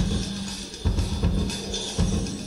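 Live rock band playing a steady groove: drum kit with heavy bass drum hits about once a second over a held low bass note.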